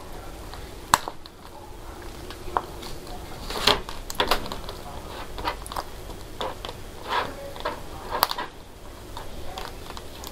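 STAHLS heat transfer vinyl being weeded by hand: irregular crackles, ticks and scrapes as a hook tool picks at the cut vinyl and the excess is peeled off its plastic carrier sheet. A sharp click comes about a second in, and the busiest crackling is around four seconds in.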